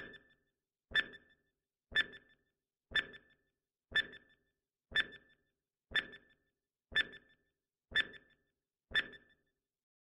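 Countdown-timer sound effect: ten clock-like ticks, one a second, each a sharp click with a short rattling tail.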